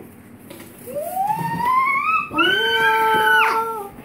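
A child's long, wordless vocal sound, an excited drawn-out "ooooh". It rises in pitch for over a second, holds steady on one high note, then drops away near the end.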